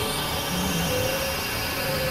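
Experimental synthesizer noise music: a steady, dense wash of noise with faint held drone tones underneath.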